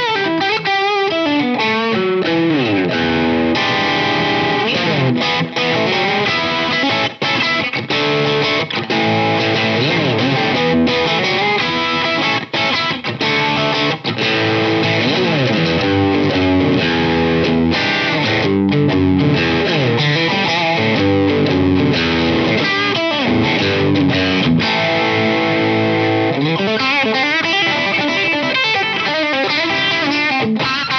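Fender American Vintage II 1951 Telecaster played through an amp: a continuous electric guitar passage of single notes and chords, with many bent notes that glide up and down in pitch.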